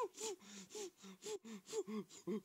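Donald Duck's squawky voice gasping and panting in quick short puffs, about four a second, from the effort of working a hand pump to inflate an air mattress.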